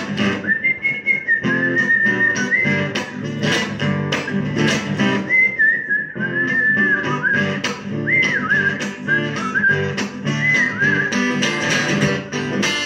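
A whistled melody over strummed acoustic guitar chords, the whistle sliding between notes. It pauses for about two seconds in the middle, then resumes.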